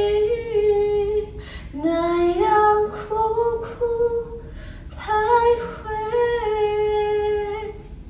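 A woman singing a melody unaccompanied, holding long notes in three phrases with short breaks between them.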